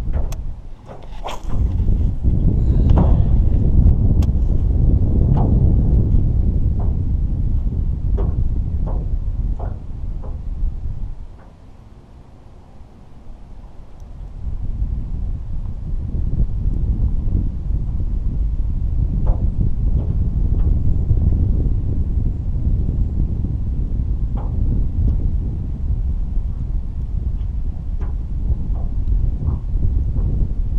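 Wind buffeting the microphone as a steady low rumble that eases briefly about a third of the way in, with scattered light clicks from the spinning rod and reel being worked.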